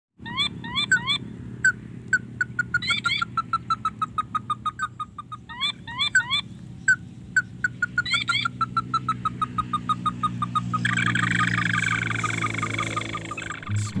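Crake (burung tikusan) calling: a long series of short notes repeated several times a second, broken by groups of quick rising whistles, over a steady low hum. A denser noisy layer joins from about eleven seconds in.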